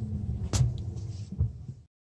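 Low, steady rumble inside the cabin of a 2018 Mazda 6 rolling slowly, with a sharp click about half a second in and a soft thump near the end before the sound cuts off suddenly.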